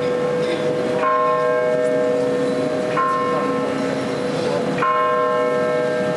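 Orthodox church bell struck slowly, about once every two seconds, three strikes in all, each ringing on into the next over a steady hum.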